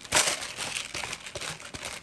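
Hand-held pepper mill grinding black peppercorns: a dense gritty crunching made of rapid fine clicks, starting just after the beginning.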